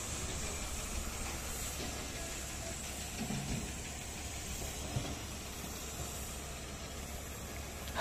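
Faint steady hiss with a low hum underneath, with a soft bump about three seconds in and a small click about five seconds in.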